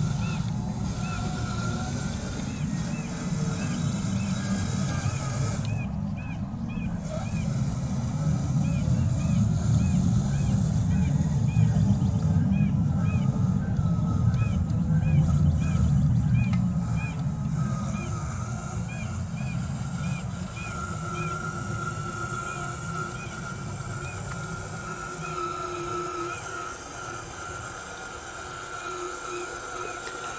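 RC 6x6 truck's electric motor and gearbox whining as it drives over grass with a loaded lowboy trailer. The whine becomes plainer about two-thirds of the way through. A steady low rumble and a small high chirp repeating about twice a second run under it.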